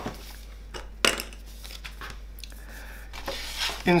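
Paper rustling and crinkling as printed instruction sheets are unfolded and laid flat on a cutting mat, with two crisp crackles about a second in.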